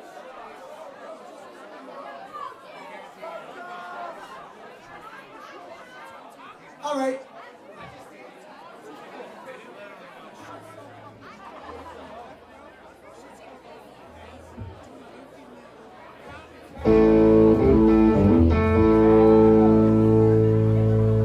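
Audience chatter in a bar, with one short loud call from the crowd about seven seconds in. About three seconds before the end, the band comes in loud with amplified harmonica and guitar holding a full chord.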